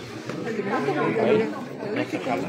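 Several people talking at once, overlapping voices of background chatter in a large room.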